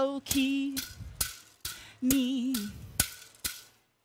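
Pū'ili, split-bamboo hula rattles, struck in a slow beat of sharp rattling clicks, about two a second. A woman sings two short held notes between the strikes. The strikes stop shortly before the end.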